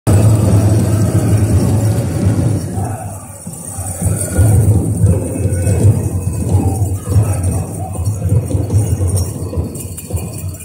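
A powwow drum group beating a big drum and singing, with the jingling of the dancers' bells.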